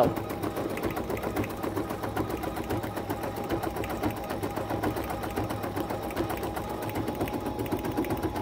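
BERNINA B 880 Plus embroidery machine stitching steadily at speed, its needle going in a rapid, even rhythm as it sews down a white fill background through a thin topping film.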